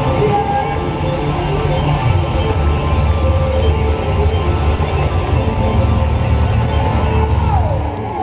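Live band playing a heavy, bass-driven hip-hop groove through a concert PA, with crowd noise underneath. The bass and drums stop right at the end.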